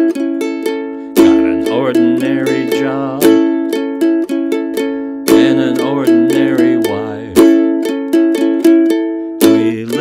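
Ukulele strummed in a steady rhythm, its chords changing with a stronger strum about every four seconds.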